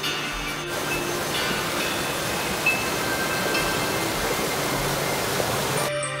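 Rocky woodland brook (Roaring Brook) rushing and splashing over boulders in small cascades, a steady loud rush of water, with soft background music underneath. The water sound cuts off just before the end.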